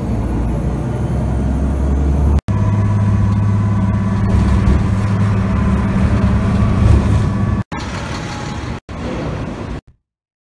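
Motor vehicle engine drone and road noise heard from inside a moving vehicle, a steady low hum. It is cut off abruptly three times, at about two and a half seconds, near eight seconds and near nine seconds, and is quieter after the second break.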